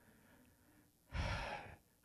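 A man's loud breath into a close microphone, about a second in, lasting about half a second and fading.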